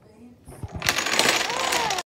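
A short line of dominoes toppling in a chain onto a hard tabletop: a few soft knocks, then a rapid clatter of clicks that lasts about a second.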